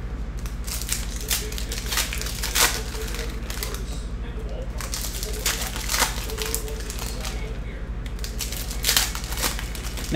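Foil trading-card pack wrappers crinkling and tearing open by hand, in irregular crackles, over a steady low electrical hum.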